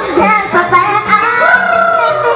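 A singer's amplified voice over a band's backing music with a steady beat; about halfway through the voice rises onto a long held note.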